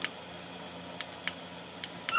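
A few sharp plastic clicks as a light-up plastic elf-hat headband is handled, over a faint steady hum.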